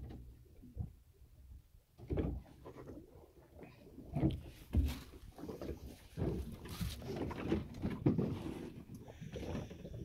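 Irregular knocks and thuds as a Coleman plastic cooler is handled and its lid lifted open, busiest in the second half.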